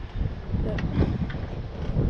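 Wind buffeting the microphone in an uneven low rumble, with a few light handling clicks near the middle.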